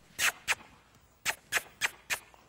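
A series of five quick, sharp kissing smacks made with the lips to a horse, a cue asking it to turn and face the handler.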